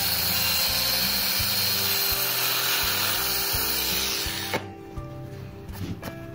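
Power grinder fitted with a Hoof Boss eight-tooth chain cutting disc, running steadily as it trims a goat's hoof wall, then switched off about four and a half seconds in.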